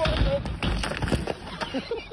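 Skis scraping and clattering across a terrain-park box as a skier falls off it into the snow, a run of knocks that is loudest in the first second, over a low rumble, with a voice calling out.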